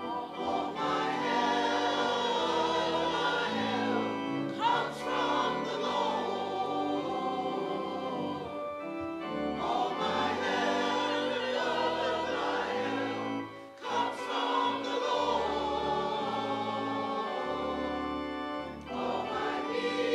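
Choir and congregation singing a hymn together, phrase by phrase, with brief breaths about every five seconds.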